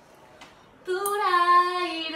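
A woman singing unaccompanied in Japanese: after a short pause she comes in a little under a second in and holds one long note.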